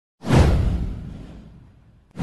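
A single whoosh sound effect with a low rumble beneath it, swelling in sharply about a quarter of a second in and fading away over about a second and a half.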